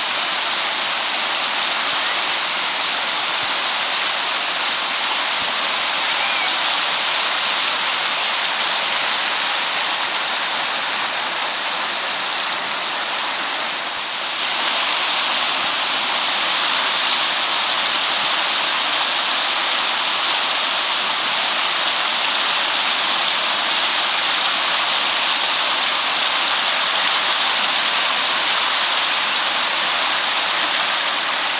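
River rapids rushing steadily over a rocky bed, a loud, even sound of churning whitewater that dips briefly about halfway through.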